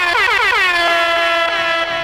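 Air-horn sound effect blasting through the PA system: one long blast that sweeps down in pitch over the first half-second, then holds steady and begins to fade near the end.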